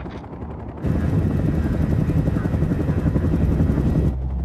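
Helicopter rotors chopping with a fast, steady beat over an engine rumble, jumping abruptly much louder about a second in.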